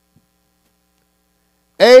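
Near silence during a pause, then a man's voice speaking into a microphone begins just before the end.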